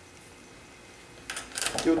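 Quiet room tone, then a short burst of small clicks and cloth rustling about a second and a half in, as hands wrap a towel around the cap of a capped aluminium canteen. A man's voice starts at the very end.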